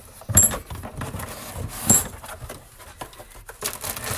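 Unpacking a flower delivery by hand: the cardboard box and the plastic-sleeved bouquet rustle, with two sharp clinks about a second and a half apart.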